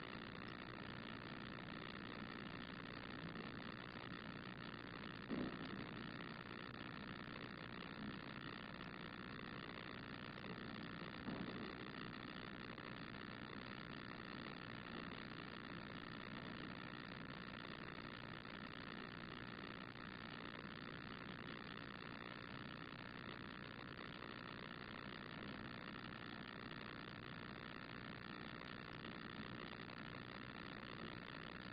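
Quiet, steady room tone of a large chamber, a low even hum, with a few faint knocks about five and eleven seconds in.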